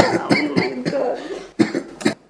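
A person coughing: a run of rough coughs in quick succession, then another sharp cough or two near the end.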